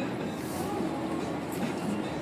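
Steady road and engine rumble inside a moving car's cabin.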